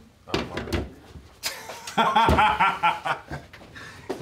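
Men laughing, starting about two seconds in, after a few light knocks.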